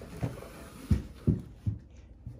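Cardboard shipping box knocking and scraping about as two Great Danes tug at it with their mouths and paws, giving four dull thuds, the middle two the loudest.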